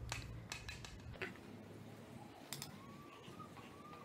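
A few light clicks and taps from handling a makeup brush and a pressed-powder compact, most of them in the first second and one more about two and a half seconds in. A faint, thin, wavering tone comes in during the last second and a half.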